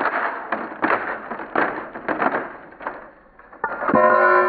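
A claw hammer dropped onto thin lightweight-PLA wing sections on concrete: a quick run of knocks and crunches as it strikes and crushes a bare wing piece and hits a fiberglass-covered one, then clatters down. Plucked-string music begins near the end.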